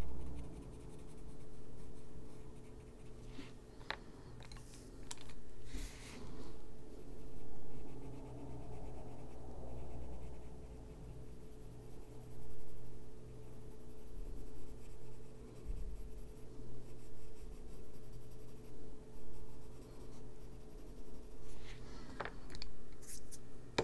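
Coloured pencil scratching across paper in short, uneven shading strokes, with a few sharp clicks along the way and a clatter near the end as the pencil is set down.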